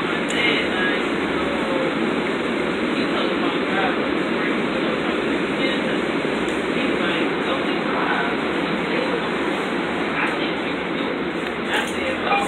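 Steady engine and road noise inside a city bus.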